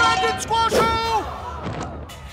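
A cartoon character's wordless voice crying out with rising and falling pitch during the first second or so, over a steady low rumble.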